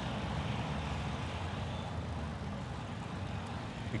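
Steady road traffic noise heard from a moving bicycle, with no single event standing out.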